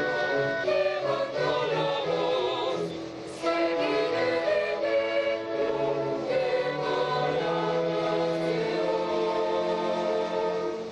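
Youth and children's choir singing with an orchestra in held, sustained notes, with a brief softer moment about three seconds in.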